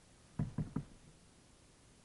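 Three quick knocks on a kayak's hull in close succession, dull and low.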